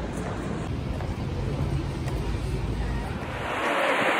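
Outdoor city street noise: a steady low rumble of traffic with wind on the microphone, turning into a brighter hiss about three seconds in.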